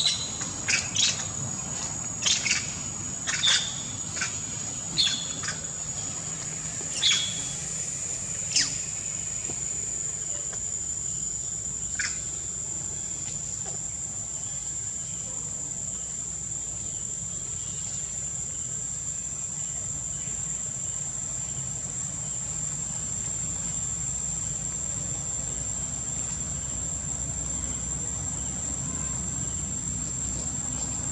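A steady high-pitched insect drone, with about ten short, sharp high calls over the first nine seconds and one more about twelve seconds in.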